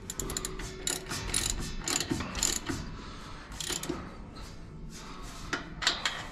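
Irregular metallic clicks and rattles from hand work on a Brunswick pinsetter's ball wheel and belt assembly, busiest in the first four seconds and sparser after.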